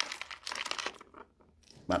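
Crinkling and rustling of something being handled, a quick run of crackles for about the first second. A man's voice starts near the end.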